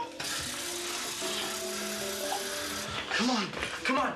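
Water running from a bathroom sink tap into a glass, then shut off about two-thirds of the way in, under background music with held tones. A short voice sound, a grunt or gasp, comes near the end.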